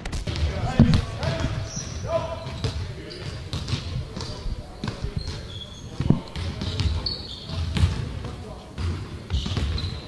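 Basketballs bouncing on a hardwood gym floor, several separate bounces with the sharpest a little under a second in and about six seconds in, mixed with short high squeaks of sneakers on the court.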